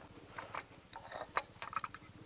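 Scattered light clicks and small knocks of hands handling the battery compartment of an old Geiger counter and the small wired phone battery fitted in it, irregular and faint.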